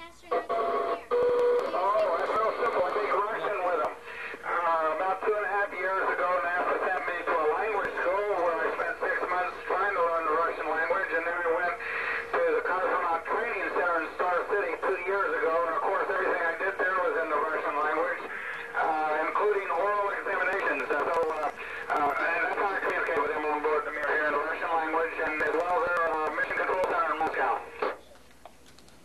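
Speech over a radio link: a man's voice, thin and narrow as through an amateur radio loudspeaker, talking almost without pause. It is the astronaut's reply coming down from the Mir space station.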